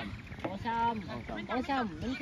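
Football players shouting and calling out to each other on the pitch: one long held call about half a second in, then several shorter shouts.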